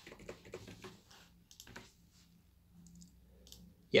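Computer keyboard keys typed in short, light clicks, most of them in the first two seconds, with a few fainter ones later.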